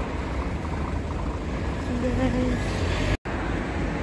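Steady road traffic noise from cars and vans passing on a busy street: the rumble of engines and tyres. The sound cuts out completely for a moment just over three seconds in.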